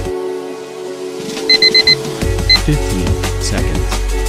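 Electronic workout music with an interval-timer signal: four quick, high electronic beeps, then a fifth beep about half a second later, marking the end of the exercise and the start of the rest period. A heavy bass line comes into the music just after the beeps.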